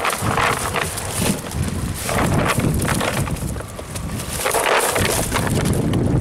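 A net full of live whiteleg prawns being shaken out into a plastic crate: irregular rustling and pattering of the mesh and the flicking prawns, in surges about every two seconds, over a low rumble of wind on the microphone.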